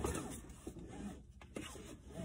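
Car seatbelt webbing being pulled out of its retractor and drawn across the body: a faint sliding noise with a few small clicks.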